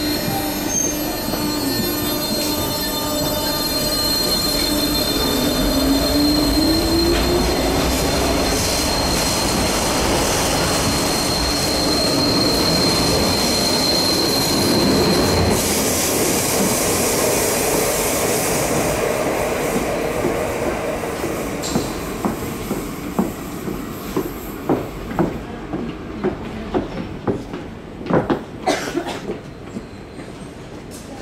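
A Cercanías electric multiple unit pulling out of the station: a high, steady wheel squeal from the tight curve stops about halfway through, with the electric traction motors' whine rising in pitch as it accelerates. The rolling noise then fades as it moves off, and a run of sharp clacks from the wheels over rail joints comes near the end.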